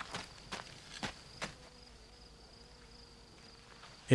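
Faint footsteps on stony ground, four steps in the first second and a half, over a steady high drone of insects.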